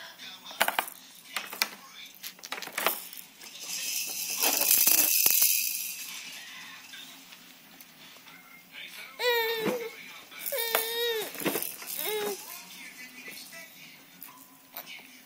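Baby making high-pitched, wavering squeals and calls in the second half, after a few sharp clicks of plastic toys and a loud breathy hissing for about two seconds.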